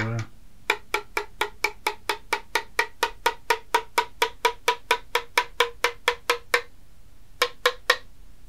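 Metal spoon tapping the bottom of a ceramic mug of just-stirred hot chocolate. It goes about five quick taps a second for some six seconds, each tap ringing with a pitched note, then three more taps after a short pause near the end. This is the hot chocolate effect: the note of the taps climbs as the bubbles stirred into the drink clear.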